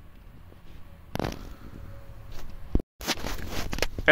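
Rustling, crackling handling noise, like packaging being handled, starting suddenly about a second in. It breaks off in a moment of dead silence near the three-second mark, then the rustling resumes.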